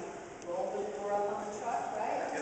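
Speech only: a woman talking into a podium microphone.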